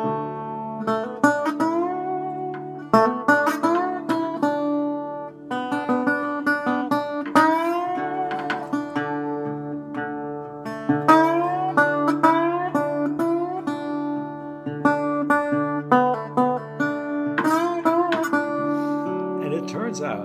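Metal-bodied resonator guitar played with a slide in a blues style. Phrases of plucked notes glide up into pitch over a steady low bass note.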